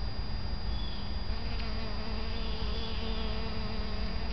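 A bee buzzing as it forages in a flower, the buzz coming in about one and a half seconds in and wavering slightly in pitch, over a steady low rumble.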